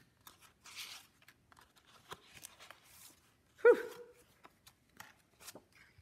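Faint rustling and crinkling of sheets of paper being handled, in a run of soft, scattered ticks and brushes. A short breathy exclamation, "whew", comes about three and a half seconds in and is the loudest sound.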